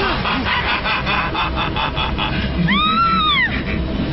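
Cartoon soundtrack with music and effects: a fast, even pulsing of about six beats a second for the first two seconds, then a single whine that rises and falls in pitch near the end.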